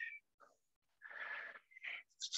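A person's soft, breathy exhale lasting about half a second, about a second in, as he relaxes after a vigorous arm exercise.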